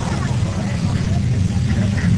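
Studio tour tram in motion: a steady, loud low rumble with a hiss above it.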